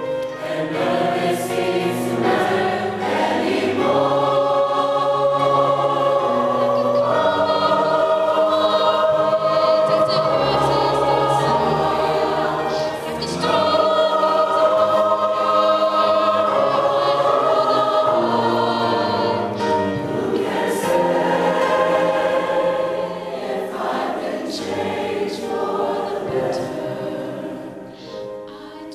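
Mixed choir of men and women singing sustained chords, swelling in the middle and fading away near the end.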